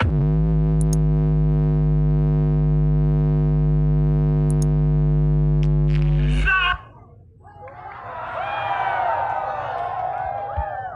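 A long, loud synthesized bass note through a large sound-check rig stacked with subwoofers: it slides down in pitch at the start, holds steady for about six seconds and cuts off suddenly. A crowd's shouts and whistles then swell.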